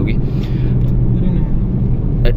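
Steady low rumble of engine and road noise inside the cabin of a Renault Kiger, a three-cylinder compact SUV, cruising on a highway at about 65 km/h with a steady hum under the tyre noise.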